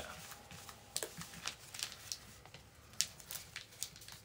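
Trading cards being gathered and stacked by hand, giving faint scattered clicks and rustles.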